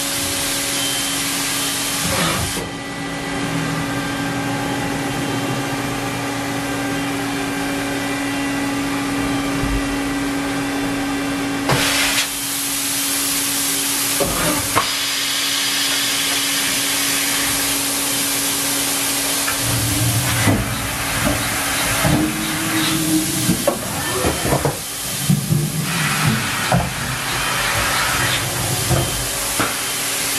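A Haas VF-3SS machining centre running, with a steady hiss and a steady hum. From about twenty seconds in come a run of clunks and low knocks as the automatic pallet changer swaps its two pallets.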